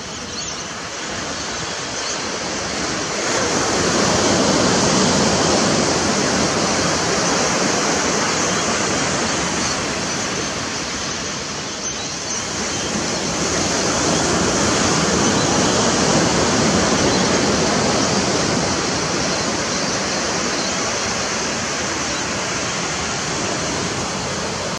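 Small sea waves washing onto the shore: a steady rush that swells louder twice and eases off between.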